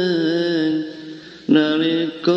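A solo voice chanting a Javanese pujian, the devotional song sung before the prayer. It holds a long wavering note, breaks off just before the middle, and starts a new phrase about a second and a half in.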